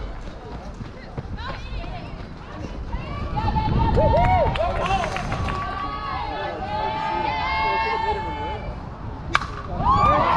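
Several girls' voices cheering and chanting with long, high held calls, overlapping and loudest through the middle. Near the end comes one sharp crack of a softball bat hitting the pitch.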